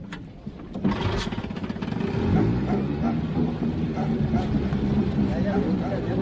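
Small long-shaft outboard motor of a wooden river canoe running steadily, fading in over the first second, with people's voices over it.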